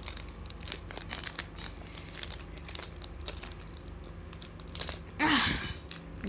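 Plastic candy-bar wrapper crinkling and crackling in the hands as it is handled. About five seconds in, a brief, louder breathy vocal sound cuts across it.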